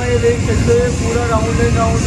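Steady low rumble of a vortex tunnel's rotating drum, with a voice sounding over it.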